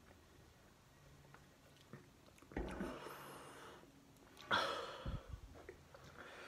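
Quiet drinking from a plastic bottle, then two loud breathy exhales after the swallow, about two and a half and four and a half seconds in, with a low thump just after the second.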